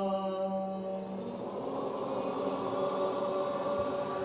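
Devotional group chanting. One voice holds a long, steady chanted note, then a little over a second in many voices join and the sound thickens into a crowd chanting together.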